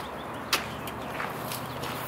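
Band gear being handled in the back of a van: one sharp knock about half a second in and a lighter click a little later, over a steady low background.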